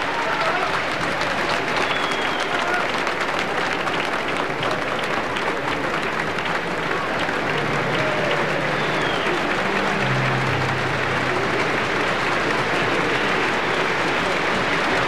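Large concert audience applauding steadily, with scattered voices from the crowd.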